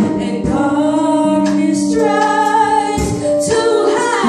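Female gospel vocal group singing in harmony, a lead voice on microphone over the others' held notes, with a few sharp beats.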